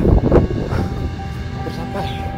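Noise with a short voice in the first half second, then background music with long held notes coming in about a second in.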